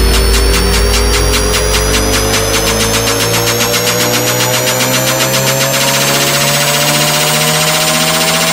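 Electronic dance music build-up: a synth tone rises steadily in pitch over a fast, even drum roll. The heavy bass drops out about three seconds in and a hiss builds toward the end.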